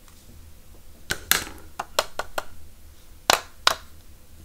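Sharp taps and clicks of a blue plastic spoon and a card label knocking against paper as gold embossing powder is shaken off a VersaMark-stamped label. There is a cluster of taps about a second in, four quicker ones around two seconds, and the two loudest near the end.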